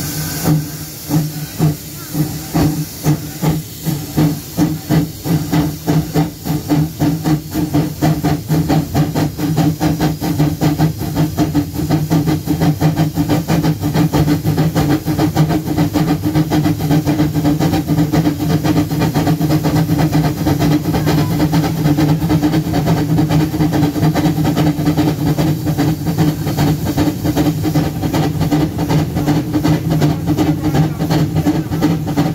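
Steam locomotive 378 78 working: exhaust chuffs about two a second at first, quickening until they run together by about ten seconds in, over a steady hiss of steam and a low hum.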